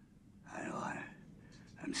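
Speech only: an old man speaking quietly and haltingly, a word or two with pauses between.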